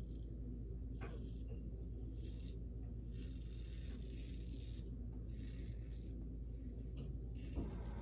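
Gillette Black Beauty adjustable safety razor scraping through lathered stubble on the cheek: a series of short, faint rasps over a steady low hum.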